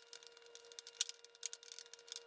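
Faint scraping and soft clicks of a silicone spatula stirring thick batter in a glass bowl, with one sharper tap about a second in.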